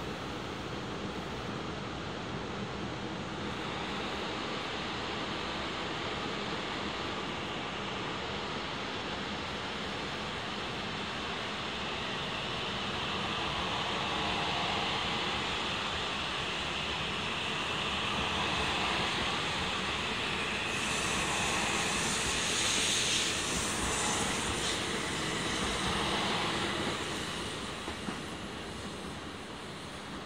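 E6 series Komachi shinkansen pulling out of the station and gathering speed past the platform: a steady running noise that builds, with a rushing hiss at its loudest about three quarters of the way in, then dies away as the train leaves.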